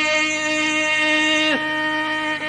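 Carnatic classical concert music in raga Pantuvarali: one long held melodic note with a steady drone beneath. The note dips in pitch about one and a half seconds in, then holds again.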